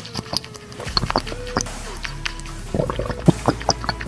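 Cartoon drinking sound effect of soda being sucked through a straw, a run of short wet clicks and gulps, over background music.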